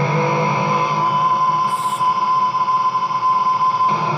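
Ibanez JEM electric guitar played through distortion, holding one long sustained high note. A brief hiss comes in about two seconds in.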